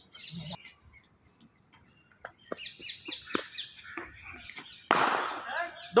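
Songbirds chirping in quick, repeated high calls. About five seconds in, a sudden loud noisy burst fades away over a second.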